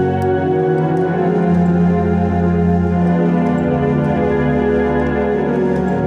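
Yamaha electronic keyboard playing held chords in a sustained organ-like voice, the right hand holding the chord and the left hand playing bass notes. The chord changes every couple of seconds in a worship-style progression.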